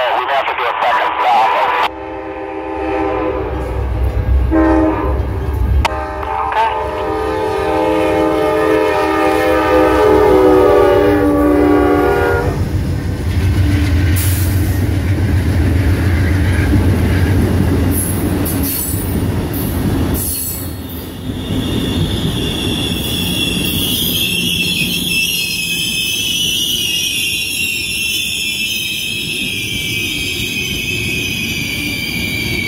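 Nathan K5LA five-chime air horn on a GE P42DC locomotive sounding several blasts, the last held for about six seconds and dropping in pitch as the engine passes. Then the diesel locomotives rumble by, and from about two-thirds of the way in the passenger cars' brakes squeal as the train slows for its station stop.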